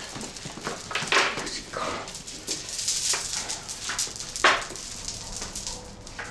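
A woman's short breathy gasps and small pained moans after hurting her neck, the strongest coming about a second in, around three seconds in, and loudest at four and a half seconds.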